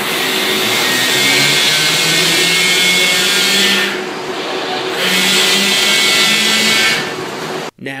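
Drive cabinet of an impulse roller coaster's linear induction motors running under load during a launch: a loud hum with hiss over it. It eases off for about a second around the middle, surges again for the second swing in reverse, and cuts off suddenly near the end.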